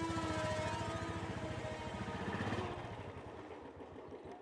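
Motorcycle engine running with a rapid low thumping that fades away over the last second or so. A held background-music tone dies out early on.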